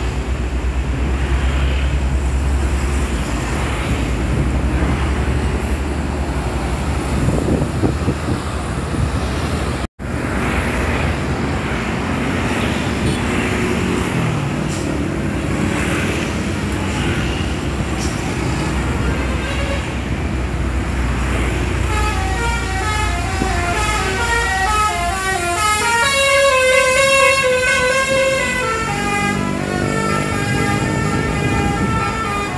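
Road traffic running past: cars, motorbikes and buses. From about two-thirds of the way in, a bus's multi-trumpet basuri (telolet) horn plays a tune of stepping notes, several at a time, running to the end.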